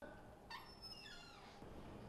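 Faint, high cry of a newborn baby that falls in pitch, heard through the operating-theatre door.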